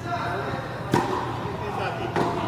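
A single sharp pop of a tennis ball about a second in, against a background of faint voices.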